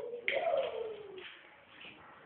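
A person's drawn-out, hoot-like vocal sound that starts suddenly and slides down in pitch over about a second.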